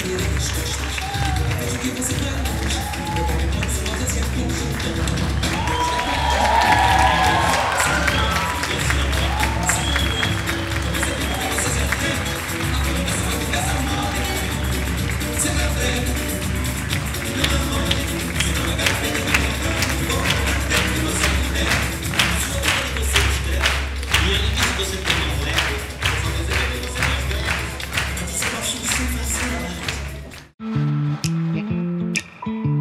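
Samba music playing with a steady beat while a theatre audience applauds and cheers, with a few whooping voices. From about halfway, the clapping falls into a regular rhythm in time with the music.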